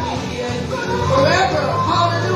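Worship music with a steady low bass line, and a woman's voice through a microphone rising and falling over it.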